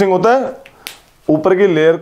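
A man speaking in two short phrases, with a couple of sharp clicks in the pause between them just under a second in.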